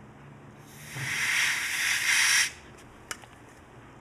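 A blast of compressed air from a duster, a loud hiss lasting about two seconds, blowing loosened cotton fragments and solvent off a freshly cleaned circuit board. A single sharp click follows about three seconds in.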